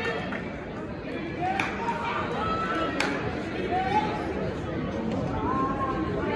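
Spectator chatter and scattered shouts from a crowd in a gymnasium, with a sharp click about three seconds in.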